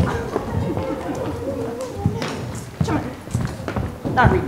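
Shoes clattering on a stage floor as several actors walk and hurry across it, under indistinct overlapping chatter.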